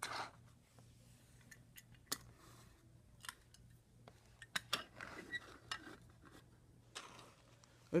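Scattered light clicks and taps of small toy cars being handled and set down on a paper race-track mat, over a faint steady low hum.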